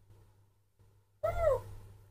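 A single short, high cry from a baby monkey a little past halfway through, rising and then falling in pitch.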